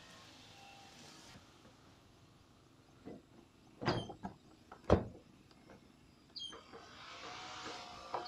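A few short sharp knocks and clicks over a quiet background, the loudest a single knock about five seconds in.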